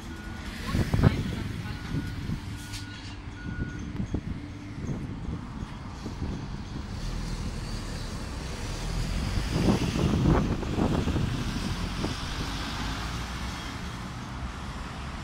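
Elevator beeping three short times, about a second apart, with a knock about a second in, then the low rumble of road traffic passing outside, loudest around ten seconds in.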